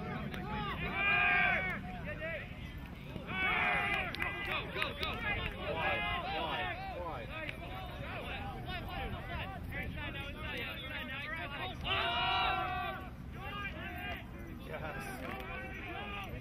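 Several voices shouting and calling out at once during play, with loud shouts about a second in, near four seconds and about twelve seconds in.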